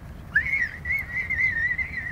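A person whistling one long, wavering note at a high pitch, starting about a third of a second in.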